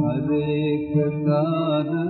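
Vintage 1940s Hindi film song recording playing: a continuous, wavering melody line held without a break.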